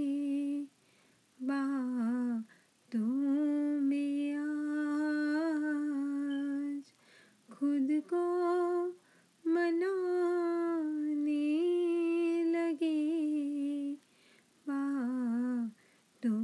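A single voice humming a wordless ghazal melody, unaccompanied: long held notes with wavering turns, in several phrases broken by short silences.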